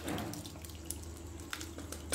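Whey and curds of freshly split milk poured from a bowl through a stainless-steel mesh strainer into a pot: a steady pour of liquid splashing, with a few light clicks. This is the straining that separates the chhena from its whey.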